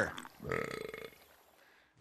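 A man's belch, a single burp starting about half a second in, lasting just under a second and fading away.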